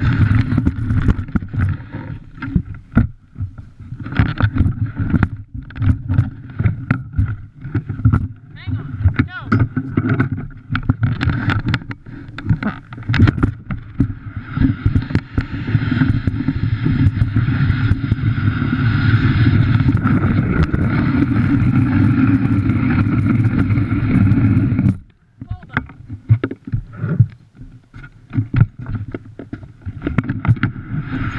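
Dog sled running over packed snow: the runners scrape and hiss while the sled frame knocks and rattles. The jolts are irregular at first, then give way to about ten seconds of steady, even scraping, which drops off sharply before the knocks return.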